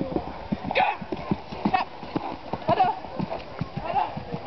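Hoofbeats of a tinker horse on a dirt and grass track: a run of short, irregular thuds, several a second, as it moves along at pace.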